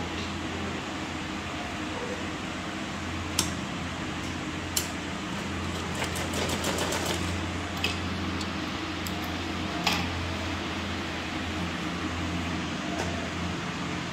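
Cloth being handled and shifted on a wooden table, with a few sharp clicks and a quick run of ticks about halfway through, over a steady low hum.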